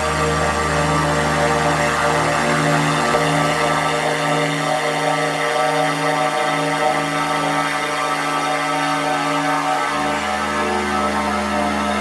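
Electronic drum and bass (neurofunk) music in a beatless passage of sustained synth drones over a low bass tone. The bass fades out about four seconds in and comes back on a new note near ten seconds.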